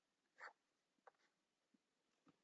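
Near silence with a few faint clicks at a computer, the first and loudest about half a second in and two smaller ones later.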